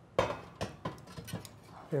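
Kitchen utensils knocking and clinking against a plate and an air fryer basket: one sharper knock just after the start, then a few light clicks.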